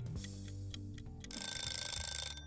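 Short musical transition sting: held low notes, then about a second in a bright, high ringing chime.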